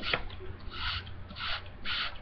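Homemade glue-and-liquid-starch slime being kneaded and squeezed by hand close to the microphone: a few short, irregular rubbing and squishing noises.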